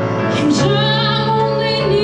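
A woman singing a slow ballad over keyboard chords; her voice comes in about a third of the way through and is held with vibrato.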